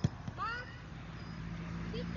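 A football kicked hard, a sharp thud right at the start, with a softer knock just after. About half a second in comes a short high call that bends up and down, and a low steady hum sets in about a second in.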